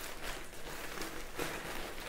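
Bubble wrap and shredded paper packing rustling and crinkling in the hands as a parcel is pulled open, a quiet irregular crackle.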